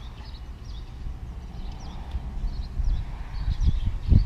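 Outdoor ambience: a steady low rumble with small birds chirping faintly in the background, and a few dull knocks near the end.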